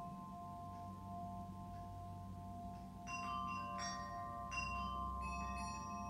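Meditative background music of ringing bell-like tones. A few held tones fade slowly through the first half, then a run of new struck notes comes in about three seconds in.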